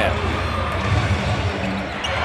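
Steady basketball-arena ambience with the crowd murmuring.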